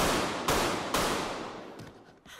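Three gunshots about half a second apart, the first the sharpest, with the sound ringing on and fading after each.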